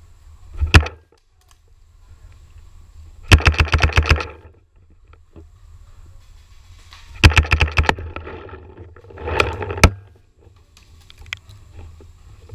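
Paintball marker firing rapid strings of shots, about ten a second: a short burst about a second in, then three longer volleys near three, seven and nine and a half seconds in.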